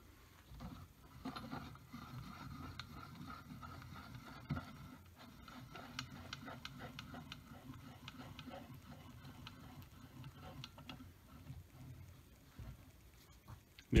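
Handwheel of a YEEZUGO 6350 compound slide table being cranked, driving the aluminium table along its lead screw: faint, even ticking with a faint steady whir.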